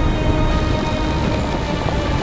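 Music mixed with a thunderstorm sound effect: steady rain and low rumbling, with a few faint held notes over the noise.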